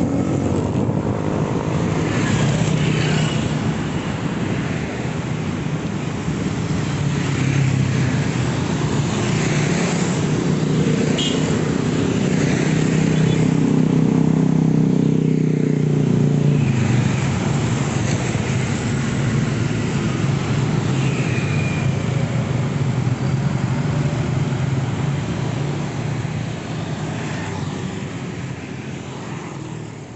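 Road traffic passing close by, mostly small motor scooters with some cars, their engines and tyres running continuously and loudest about halfway through. The sound fades out near the end.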